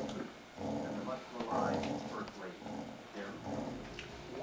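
A dog making soft, low whining and grumbling sounds in short bouts, with muffled voices in the background.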